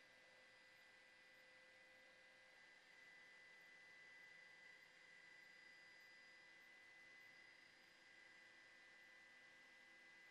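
Near silence: faint steady hiss with a low electronic hum on the broadcast feed.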